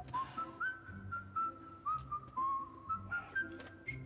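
Background score: a single whistled melody line moving in small steps between notes, over soft low bass notes.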